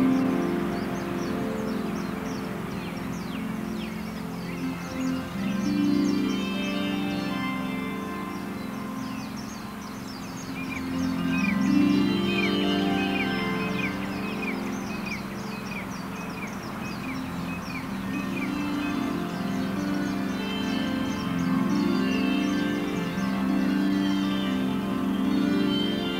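Soft ambient music of slow, held low chords that change every few seconds, with birds chirping over it; about halfway through, one bird repeats a short chirp in a quick even run.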